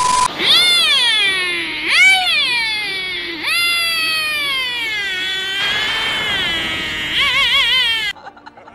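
Vegeta's dubbed Dragon Ball Z scream, a high-pitched meow-like cry repeated in about five long calls that each fall in pitch, the last one wavering, after a short beep at the very start.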